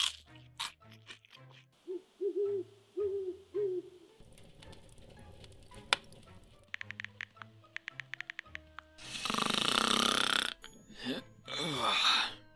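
Cartoon sound effects over light background music: an owl hooting a few times about two seconds in, a quick run of clicks around seven to eight seconds, then a long, loud snore near the end.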